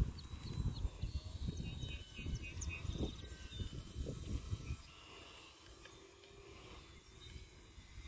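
Wind buffeting the phone's microphone, a gusty low rumble that eases off about five seconds in, with faint short bird chirps high above it.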